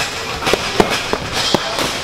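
Boxing gloves and focus mitts smacking together in a pad drill: five or six sharp slaps at an uneven pace, a quarter to half a second apart.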